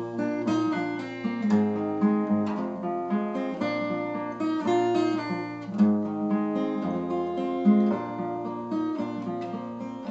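Acoustic guitar played solo: chords picked and strummed in a steady rhythm over a sustained low bass note, with no voice.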